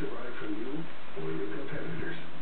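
A person's voice talking, with the words not clear enough to make out.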